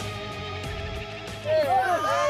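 Background music with steady sustained tones, then about one and a half seconds in several people break into loud, overlapping excited shouting and screaming.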